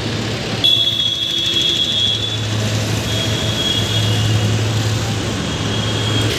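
Road traffic running steadily with a low hum. About a second in a high-pitched steady electronic tone, like an alarm beeper, starts suddenly and sounds on and off over the traffic.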